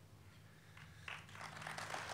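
Near quiet with a faint low hum, then an audience's applause starting faintly about a second in and growing louder.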